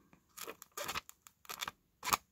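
An old paperback book's pages being turned and handled, giving a few short papery rustles.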